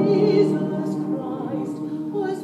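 Male voice choir singing a Christmas song in harmony, holding long chords that grow a little softer toward the end.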